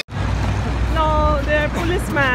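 City street traffic: a steady low rumble of passing cars, with brief voices about a second in and again near the end.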